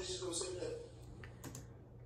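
Faint male speech from the video playing on the computer, trailing off about a second in, then two sharp computer-keyboard clicks in quick succession as the playback is stopped.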